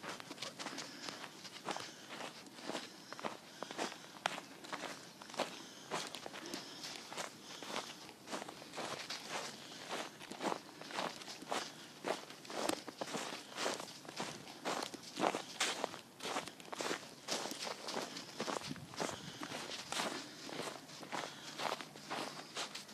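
Footsteps in snow: a person walking at an even pace, about two steps a second.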